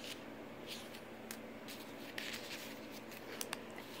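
Faint rustling of paper and card as the pages and tags of a small handmade journal are handled and turned, in a few brief crisp rustles.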